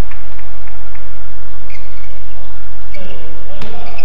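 Indoor badminton court between rallies: a few short, high squeaks of players' shoes on the court mat with light clicks, then a voice calling out from about three seconds in.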